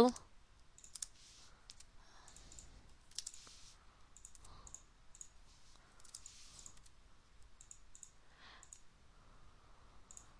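Faint, irregular clicks of a computer mouse and keyboard as commands are entered and objects are picked and dragged.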